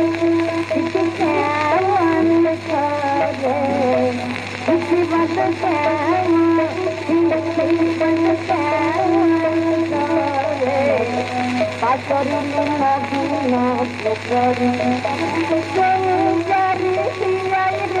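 Recorded Bengali kirtan: a solo voice sings a wavering, ornamented melody over a held harmonium tone, with a steady low hum under the recording.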